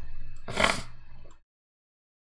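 A man's short, breathy "and..." close to the microphone over a low steady electrical hum, with a sharp burst of breath noise about half a second in; the sound cuts to dead silence about a second and a half in.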